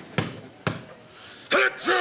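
A basketball bounced twice on a gym floor, the strokes about half a second apart, as a player dribbles before a free throw. Near the end comes a loud two-part shout.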